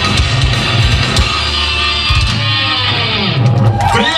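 Heavy metal band playing live: distorted electric guitars and drums over a festival PA, recorded from within the crowd.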